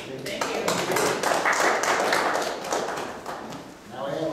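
An audience applauding, a dense patter of many hands clapping. It swells in the middle and dies away near the end.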